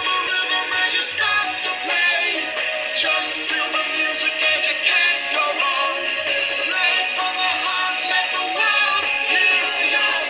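A sung English-textbook song with backing music and a steady beat, the verse 'Pick any object, make music today, you'll feel the rhythm as you start to play… let the world hear your song'.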